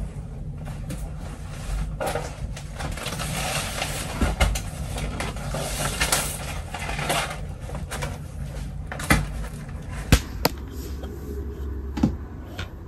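A large black B2-size poster portfolio being pulled out from beside a desk chair and handled: continuous scraping and rustling, broken by several sharp knocks, the sharpest near the end.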